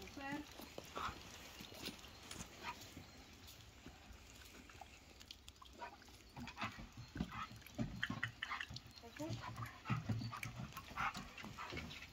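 A dog searching by scent, sniffing in short bursts. Its paws and a person's footsteps make scattered knocks and scrapes on stone steps and hollow wooden porch boards, busier in the second half.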